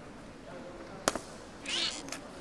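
A single sharp snap about a second in, then a short, high, wavering meow-like cry near the end, over faint murmured talk.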